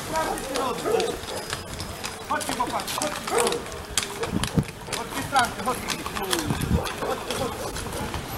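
Horses' hooves clip-clopping on a wet asphalt road as horse-drawn carriages pass, with people's voices talking over them.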